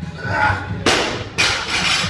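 Loaded barbell with rubber bumper plates dropped from overhead onto the lifting platform: a loud thud less than a second in, then a second impact as it bounces and lands again about half a second later, with rattling after it.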